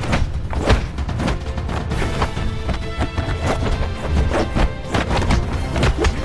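Dramatic film score under a kung fu fight's sound effects: repeated sharp punch and block hits, several in quick runs, over a steady low bass.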